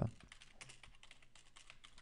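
Faint typing on a computer keyboard: a quick, uneven run of light key clicks as a name is typed in.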